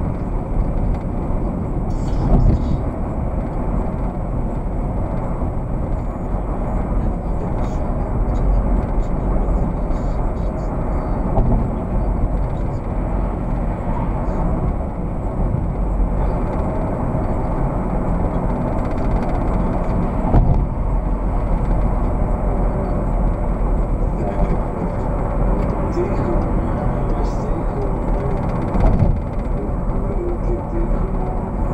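Steady road and engine noise of a moving car heard from inside the cabin, a low, muffled rumble of tyres on pavement that runs without a break.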